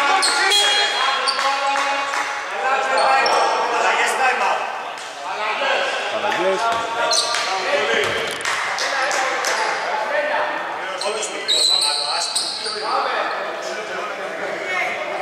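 A basketball bouncing on a hardwood court amid voices calling out, echoing in a large, mostly empty indoor arena. There are a few short high squeaks, the loudest about 11 to 12 seconds in.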